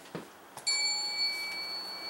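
A single bell ding struck about two-thirds of a second in, a clear high ring that fades slowly, marking a correct answer in the quiz.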